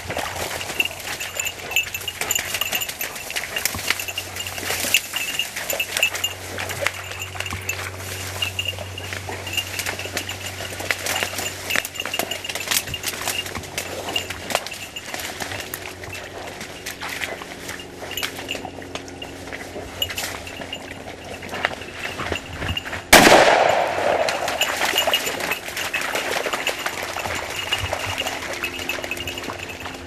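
Rustling and splashing of a hunting dog working through wet reeds and shallow water, then a single loud shotgun shot about 23 seconds in, fired at a flushed moorhen, with a short echoing tail.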